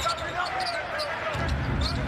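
Basketball being dribbled on an arena's hardwood court during live play, repeated short sharp bounces over a steady murmur from the crowd.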